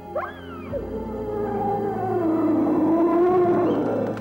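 An eerie howl-like cry used as a horror sound effect over dark background music: a short sharp upward-sweeping shriek just after the start, then a long wavering wail that glides down and up in pitch and swells to its loudest near the end.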